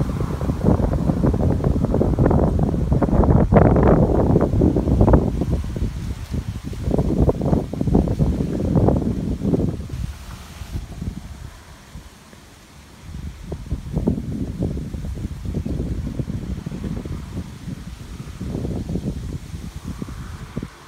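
Wind buffeting the phone's microphone outdoors, an uneven low rumble in gusts. It is strongest in the first ten seconds, nearly dies away about twelve seconds in, then gusts again more weakly.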